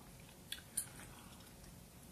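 Faint chewing of sugar-free gum by a man wearing dentures, with two soft clicks a little after half a second in.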